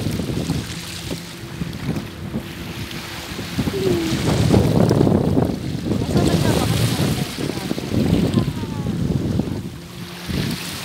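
Wind buffeting the microphone in uneven gusts, louder through the middle, over the wash of the sea.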